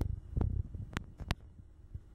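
Handling noise on the camera: a few low thumps in the first half second, then three sharp clicks over the next second.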